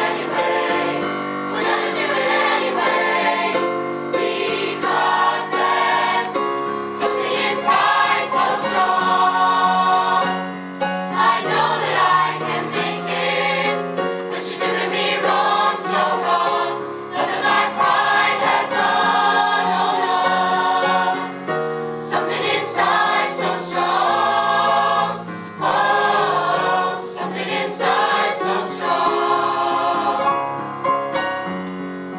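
A mixed choir of young women and men singing a song live in phrases, accompanied on a keyboard.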